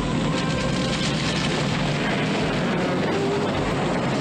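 A huge wicker-and-timber effigy burning: dense, steady crackling of the fire, with music underneath.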